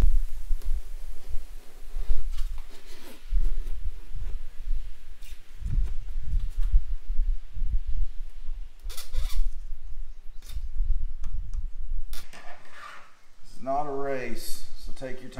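Hand acrylic scoring cutter drawn along a plexiglass sheet to score it for snapping, heard as a few short scraping strokes around the middle and near the end, over low handling bumps.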